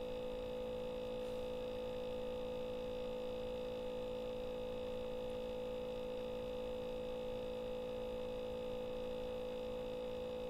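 A steady hum made of several constant tones, the strongest a mid-pitched one, with no other sounds over it.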